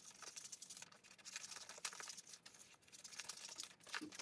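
Scissors cutting through paper: a run of faint, crisp snips mixed with paper rustling.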